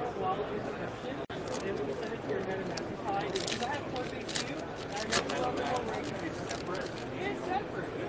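Foil wrapper of a trading-card pack crinkling and tearing as it is opened, with a run of sharp crackles in the middle, over background crowd chatter.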